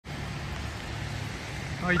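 Steady outdoor noise of light rain falling on a wet street, with a low steady rumble underneath. A man's voice starts near the end.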